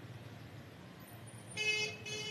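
Faint street background, then a vehicle horn sounds one short honk near the end.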